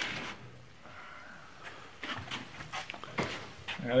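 The hinged lid of a heavy steel equipment box being lifted open: a scrape as it starts moving, a faint drawn-out creak about a second in, then a few light knocks.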